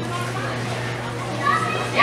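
Background voices chattering in a large indoor arena, over a steady low hum.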